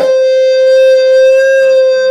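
Electric guitar holding one long sustained note with steady pitch, ringing through between faster phrases of a melody.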